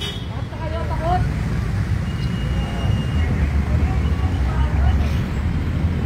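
Steady low outdoor rumble with faint, distant voices talking in snatches.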